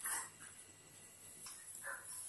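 Tailoring scissors cutting through cloth: a faint snip at the start and two more near the end.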